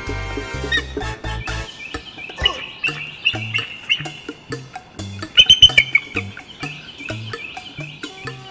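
Bald eagle giving a run of high, chittering calls, loudest a little past the middle, over background music with a steady bass line.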